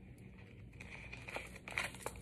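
Paper seed packets crinkling faintly as they are handled and sorted by hand, with a couple of short rustles near the end.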